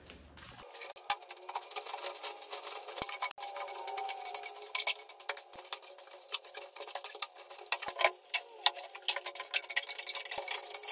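Wood chips being swept across a wooden floor with a hand brush and dustpan: dense, rapid scratching and scraping with many small clicks, starting about a second in.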